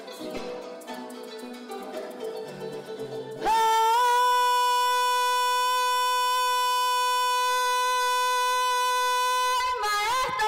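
Llanera music: harp, cuatro and bass play plucked notes, then about three and a half seconds in the instruments stop and a woman holds one long, loud sung note for about six seconds. Near the end her voice moves off the note into the melody.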